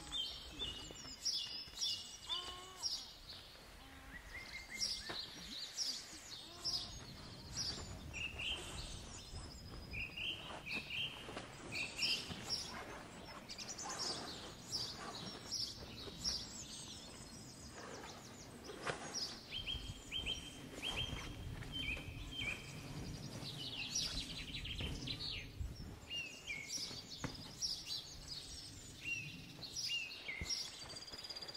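Several wild birds singing and calling, with many short chirps and whistles throughout, over a low outdoor rumble. Occasional rustles and knocks come from camping gear being handled close by.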